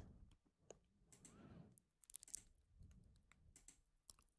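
Near silence with several faint computer mouse clicks spaced irregularly across a few seconds.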